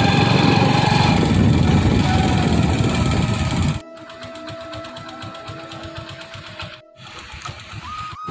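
Small vehicle engine running with a fast, even beat while on the move. About four seconds in it drops sharply to a quieter steady hum with a thin steady tone and a faint rapid ticking.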